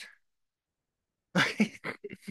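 A few quick, short yelps like a small dog's, starting about one and a half seconds in.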